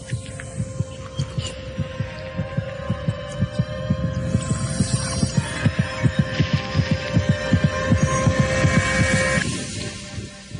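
Advert soundtrack of a fast, heartbeat-like low thudding pulse over a steady droning tone. It grows louder through the middle, and the drone cuts off shortly before the end.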